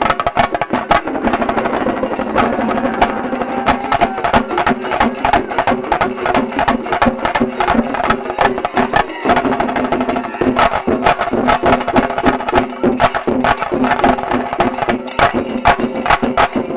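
A Shinkarimelam ensemble of chenda drums beaten with sticks in a fast, dense rhythm, many players striking together at a steady, high volume.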